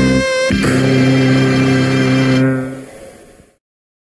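Experimental electronic music playing held chords. A new chord comes in about half a second in, fades out, and ends about three and a half seconds in.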